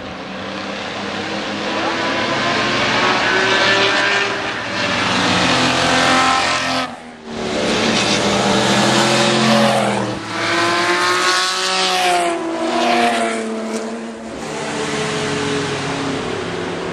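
Engines of several historic Ferrari and Alfa Romeo racing cars at speed, approaching and passing one after another, their notes rising and falling as they change gear. The sound drops briefly about seven seconds in.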